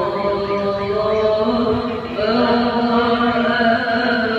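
Islamic devotional chanting (sholawat), sung with long held notes; there is a short dip about two seconds in, then the melody moves on to new held notes.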